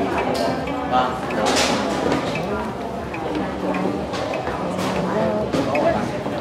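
Đàn bầu, the Vietnamese monochord, plucked a few times: each single note rings briefly and dies away, with people talking over it.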